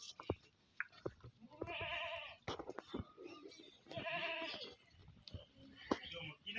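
A young farm animal bleating twice, each call under a second long with a quavering tremble, with a few sharp knocks between the calls.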